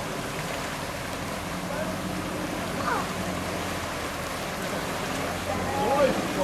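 Steady rush of river water with a four-wheel-drive ute's engine running at a low, even hum as it wades through deep water.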